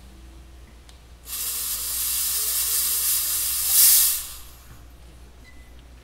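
Stage fog machine releasing a hissing blast of smoke that starts about a second in, swells to its loudest near the end of the burst and stops about three seconds later.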